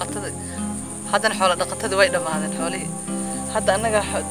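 A woman speaking in a language other than English, in short phrases, over a steady high-pitched insect trill.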